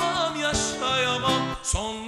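A man sings a slow ballad live, holding notes with a wavering vibrato, over a strummed acoustic guitar. There is a brief break in the voice near the end before the next held note.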